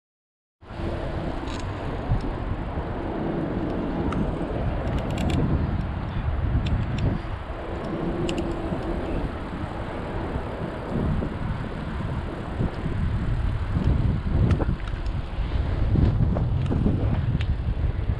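Bicycle riding along a paved trail: steady wind rush and tyre rumble on the riding camera's microphone, with scattered light clicks. The sound cuts in abruptly just after the start.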